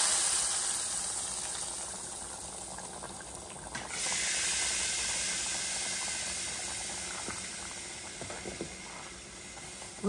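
Hot oil tempering with curry leaves sizzling as it hits a pot of liquid curry, the sizzle fading away. About four seconds in it swells again and then slowly dies down.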